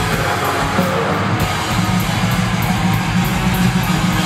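Live band playing loud, heavy music: electric guitars and bass over a drum kit, with a cymbal struck about four times a second.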